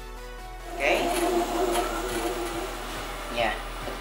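Soft background music, then from about a second in a benchtop bandsaw running loudly with a steady motor hum as its blade cuts through stacked wood blocks, easing off towards the end.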